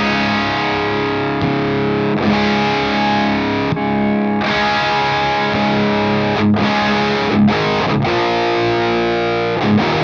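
Distorted electric guitar: a Gibson Les Paul Standard tuned down to drop C sharp, played through a Victory Super Kraken amp, mostly held, ringing chords with a few short breaks between them.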